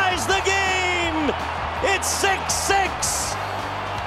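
Raised voices in the hockey broadcast mix, with music, over a steady low arena hum.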